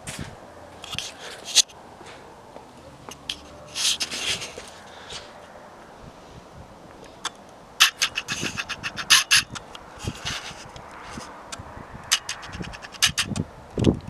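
Footsteps and scuffing on a concrete driveway with camera handling noise: scattered scrapes and knocks, with runs of quick clicks about eight seconds in and again near the end.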